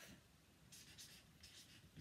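Faint strokes of a felt-tip marker writing a word on flip-chart paper: a run of short scratches starting about half a second in.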